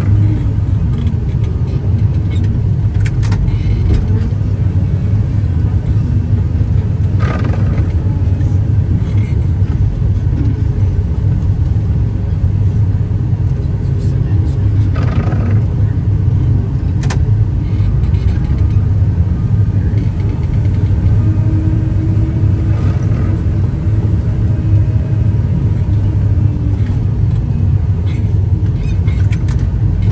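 Heavy diesel engine of a loader running steadily under load, heard from inside its cab, as its front-mounted snowblower throws snow.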